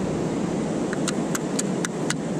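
A hand sifts wet sand in a perforated stainless-steel sand scoop to free a small metal bracket, giving a handful of sharp metallic clicks from about a second in. Steady surf sounds underneath.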